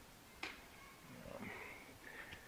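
Quiet room tone with a single sharp click about half a second in, followed by a faint murmured 'um'.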